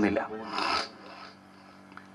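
A man's word trailing off, then a short rasping noise about half a second in, followed by faint room tone with a low hum.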